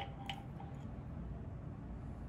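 Quiet room tone with one faint metallic click about a third of a second in, from handling a depth micrometer seated on a height master gauge stand.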